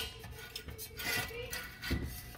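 Faint rubbing and a few light clicks as the metal drum of a shore power cord reel is turned by hand, with a faint steady hum beneath.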